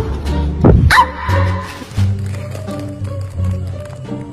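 A Pomeranian gives one short bark about a second in, over background music that runs throughout.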